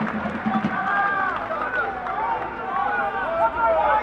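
Several voices shouting and calling at once across an outdoor football pitch during play, raised and high-pitched, overlapping throughout.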